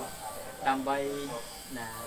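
A man speaking Khmer, delivering a lecture.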